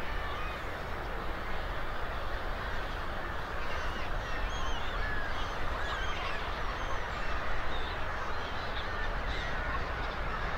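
A dense chorus of many waterbirds calling at once: short overlapping calls with thin rising and falling notes, forming a steady din.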